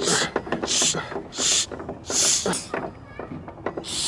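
Hand air pump at a public bike repair station, pumped four times to inflate a football: each stroke is a short hiss of air, about one every 0.7 seconds.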